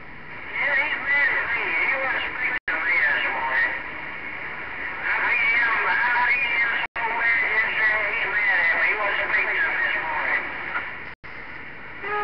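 A distant station's voice received over the radio's speaker, thin and garbled, under a steady hiss of static. The signal cuts out for an instant three times.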